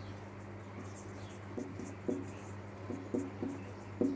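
Marker pen writing on a whiteboard: several faint short strokes, mostly in the second half, over a low steady hum.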